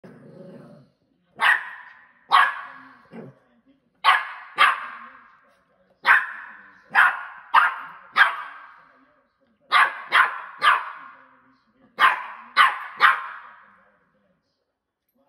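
Spring doorstop being flicked by a Westie puppy: about fourteen sharp twangs, mostly in quick pairs and triples, each ringing out for half a second or more.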